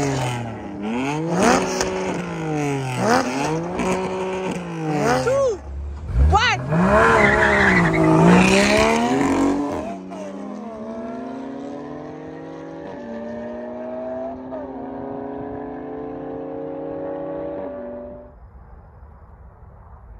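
Porsche Cayman GT4 naturally aspirated flat-six and BMW M4 Competition twin-turbo straight-six revving hard several times at the start line, each rev rising and falling. About six seconds in they launch and accelerate away, the engine note climbing through upshifts and fading into the distance until it drops away near the end.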